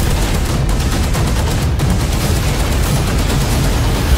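Heavy sustained gunfire in a film battle scene: many rapid shots overlapping into a continuous barrage with no break.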